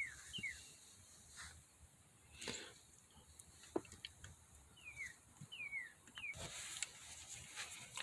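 Faint bird chirps, short falling notes in quick runs near the start and again about five to six seconds in, with a few faint clicks in between.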